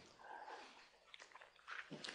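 Near silence in a pause of a man's speech, with a few faint, brief sounds about half a second in and near the end.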